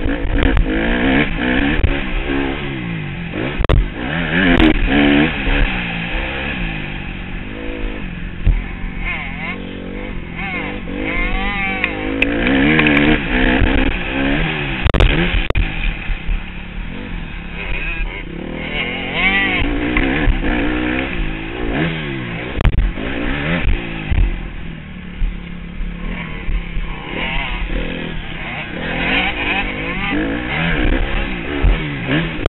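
Motocross bike's engine ridden hard on a dirt track, its pitch repeatedly rising and falling as the rider works the throttle and shifts through turns and straights.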